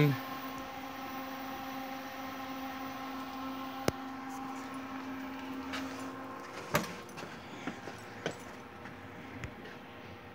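Taylor C712 soft serve machine running, its motor and refrigeration giving a steady hum with a low tone that drops out about six seconds in. Two sharp clicks come at about four and seven seconds.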